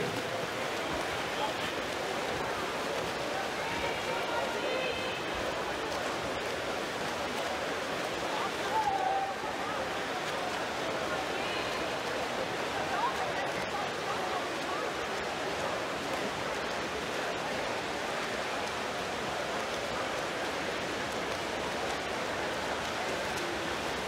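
Indoor pool ambience during a freestyle race: a steady wash of noise from swimmers splashing and the crowd in the hall, with faint voices now and then.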